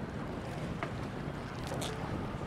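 Steady low wind and water rumble around an open boat, with wind on the microphone. A small click comes about a second in, and a short hiss near the end.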